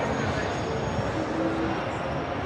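Busy street ambience: a steady wash of noise with indistinct voices in the background.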